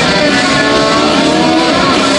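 Loud live rock music: a distorted electric guitar plays sustained notes, some sliding in pitch, over the full band.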